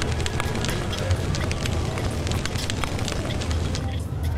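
Logo intro music: a pulsing deep bass bed overlaid with a steady stream of short crackles, a fire sound effect accompanying a flame animation.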